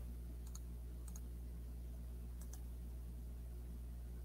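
Three faint pairs of computer mouse clicks over a steady low electrical hum, as the screen is being shared.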